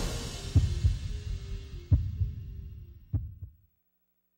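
The end of a TV station's intro theme music: a held synth tone under several deep, heavy drum hits, dying away to nothing about three and a half seconds in.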